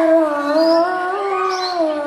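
A girl singing solo into a microphone: one long held note of a hadroh devotional song that wavers slowly in pitch and drops near the end, with no drumming under it.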